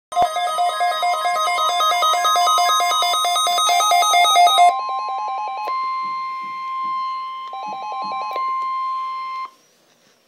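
Several NOAA weather radio receivers sounding their alert beeps together for the Required Weekly Test: fast repeating electronic beeps in several pitches over a steady high tone. The beeping thins out about halfway through, and all of it cuts off suddenly about half a second before the end.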